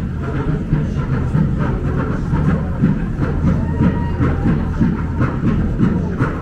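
Loud, steady low rumble of city street ambience, traffic on the road below, with an irregular low clatter running through it.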